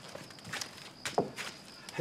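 A few sharp clicks and knocks from a wooden door being unbolted and pulled open, against a steady high chirring of crickets.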